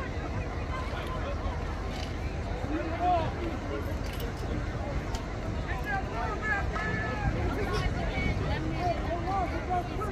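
Scattered distant voices of players, coaches and spectators calling out and chattering, over a steady low rumble.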